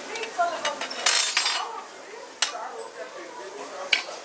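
Metal serving tongs clinking against china bowls while picking out mint leaves and lemon slices. A short clattering rattle comes about a second in, and two sharp clicks come later.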